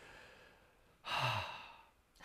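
A person sighing: one breathy exhale about a second in, opening with a short low voiced note that falls in pitch, then trailing off.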